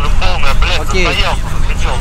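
Mostly people talking, over a steady low rumble.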